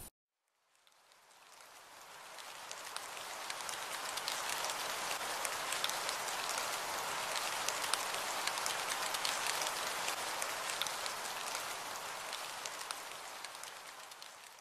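Steady rain pattering, a dense hiss of fine drop ticks that fades in over the first few seconds and fades out near the end.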